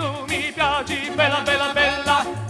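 Early-1960s Italian pop song played from a 78 rpm gramophone record, performed by a vocal quartet and instrumental ensemble. A melody with heavy vibrato moves in short phrases over a pulsing bass line.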